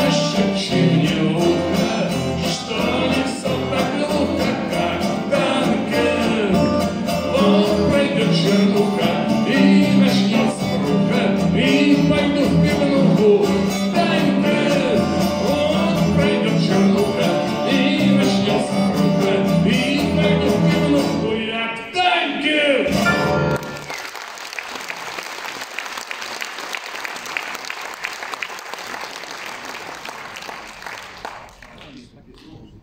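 A song played live on acoustic guitar and piano, ending about 22 seconds in. Audience applause follows, fainter than the music.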